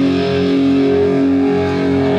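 Live hardcore punk music: a distorted electric guitar rings out held chords, sustained steadily through the moment.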